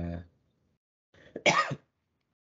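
A single short, sharp cough about one and a half seconds in, the lingering cough of someone recovering from an illness.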